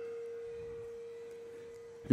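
A single held pure tone, a little below 500 Hz, slowly fading and then cut off abruptly at the end.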